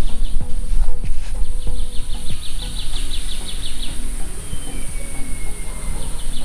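Tropical forest ambience: a steady high-pitched insect drone, with a quick run of evenly spaced chirps, about six a second, starting a second or so in and lasting a couple of seconds, then a thin falling whistle near the end. Low rumble and soft knocks sit underneath.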